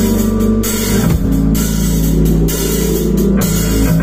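Rock band playing live and loud: electric bass and a drum kit with crashing cymbals.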